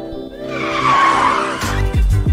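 A tyre-skid sound effect over a background music bed, swelling in about half a second in and lasting about a second. Near the end a louder music sting with heavy bass comes in.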